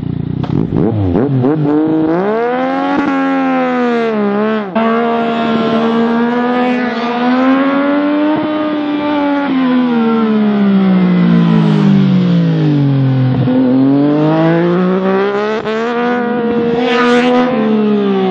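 Yamaha MT-09 three-cylinder engine through an aftermarket exhaust without its dB killer, revving hard under riding: the pitch climbs, breaks sharply about four and a half seconds in at a gear change, falls away as the bike slows for a bend, then climbs again and drops off near the end.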